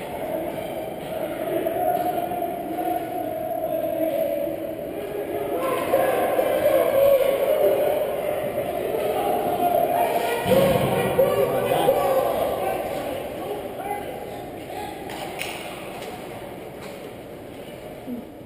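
Indistinct voices of players and spectators echoing in a large ice rink, with a heavy thud about ten and a half seconds in.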